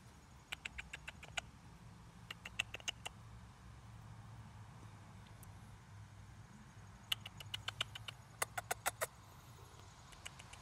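Chipmunk making quick runs of sharp clicks, several a second, in four bursts while it feeds on seeds from a hand.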